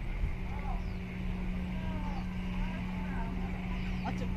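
Outdoor harbour ambience: a steady low engine-like hum over rumbling wind noise on the microphone, with faint distant voices or calls through the middle.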